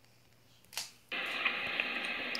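A brief click less than a second in, then a steady hiss as the played video's soundtrack starts, coming thin through a tablet's small speaker.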